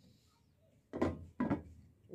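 Glass cooking-pot lid set down onto a pan: two knocks about half a second apart, each with a short ringing tail.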